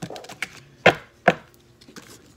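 Sharp taps and knocks of oracle cards and a guidebook being handled against a tabletop: a few short knocks, the two loudest close together just after the middle.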